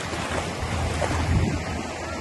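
Ocean surf washing steadily in shallow water, with wind rumbling on the microphone.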